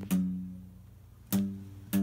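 Cutaway acoustic guitar playing a slow chord intro: three strummed chords, one just after the start, one about one and a half seconds in and one just before the end, each ringing out and fading between strokes.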